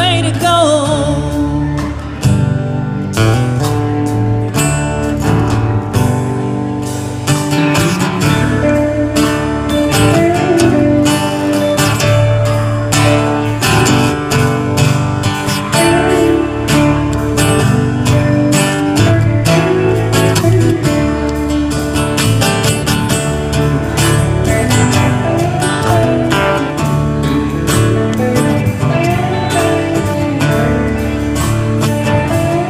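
Live country band playing an instrumental break: acoustic guitar strumming, electric guitar, electric bass and a drum kit keeping a steady beat. The singer's held last note of the chorus trails off in the first second or two.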